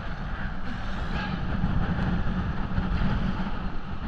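Shallow sea surf sloshing and washing around a camera held at water level, with a steady low rumble against the camera housing.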